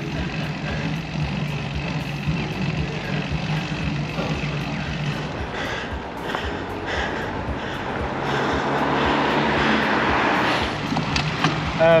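Wind rushing over the bike-mounted camera's microphone, with tyre noise on wet tarmac, as a road bike rolls down the gorge road at speed. The rush swells about eight seconds in, then eases.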